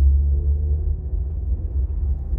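Steady low rumble of a car heard from inside its cabin, with a faint hum above it.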